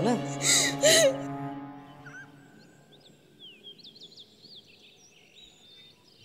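Background music with a steady low drone, with a voice over it in the first second, fading out over about two seconds. What is left is faint ambience with scattered short, high bird chirps.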